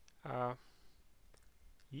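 A short syllable from a man's voice about a quarter second in, then quiet room tone with a faint click past the middle.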